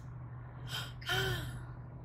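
Inside a moving car, the low cabin drone runs steadily. About two-thirds of a second in, a person takes a sharp breath, then makes a short voiced 'mm' that rises and falls in pitch; this is the loudest sound.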